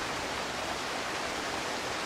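Steady, even rushing noise of outdoor ambience, with no distinct events in it.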